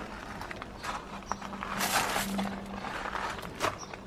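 Hands rustling plant foliage and scraping compost while bedding a plant into a planting trough, with a few light clicks and the loudest rustle about two seconds in.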